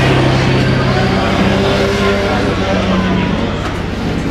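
Racing motorcycle engines running at high revs on a race track.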